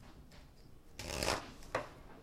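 A deck of tarot cards being shuffled in the hands: a short rustling burst of cards sliding over one another about a second in, then a fainter one just after.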